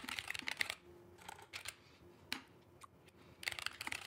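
Typing on a computer keyboard: quick runs of key clicks at the start and again near the end, with a lull of only a few scattered keystrokes in between.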